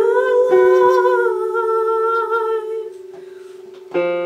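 A woman's voice holds one long wordless note, wavering slightly in pitch, over a sustained electric piano note. Both die away about three seconds in, leaving a quieter lull until a new keyboard chord is struck at the very end.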